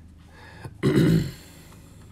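A man clearing his throat once: a short, rough burst about a second in.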